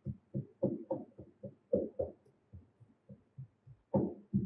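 Hand rammer pounding moulding sand packed in a wooden moulding box: dull, low thuds a few times a second at an uneven pace, as the sand is rammed firm around the runner and riser pins.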